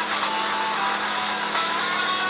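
Live rock band music with electric guitar, bass and drums, playing back through a computer's speakers and picked up in the room, dense and steady.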